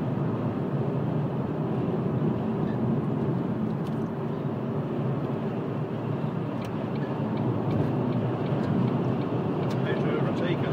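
Steady road noise from inside a moving car: tyre roar and engine hum at a constant cruising level, with a few faint ticks.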